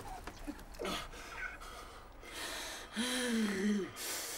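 A woman sobbing: gasping, breathy crying breaths, then a held, wavering wail about three seconds in that falls away at the end.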